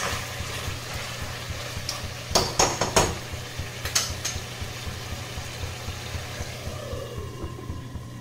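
Chicken in yogurt gravy sizzling in a black kadai on a gas burner, with a metal spoon knocking and scraping against the pan a few times between two and three seconds in and once more at about four seconds, over a steady low hum.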